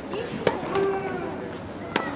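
Tennis balls struck by rackets during a clay-court rally: two sharp hits about a second and a half apart, the first the louder.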